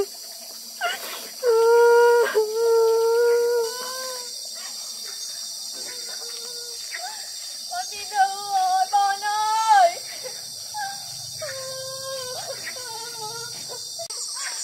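A young child's high-pitched voice in drawn-out, wavering cries and whimpers, loudest in the first few seconds and again about eight to ten seconds in. Insects chirr steadily in the background.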